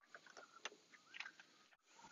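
Near silence, with a few faint ticks and brief faint chirps.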